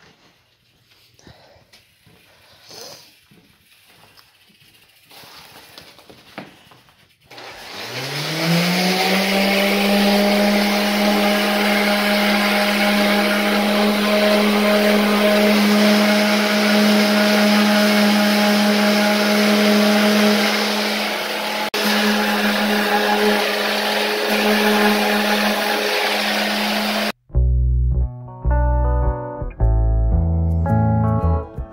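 An electric sander motor starts a quarter of the way in, rising in pitch as it spins up. It then runs at a steady hum with a hiss of sanding on the wood trim for about twenty seconds, and cuts off suddenly near the end.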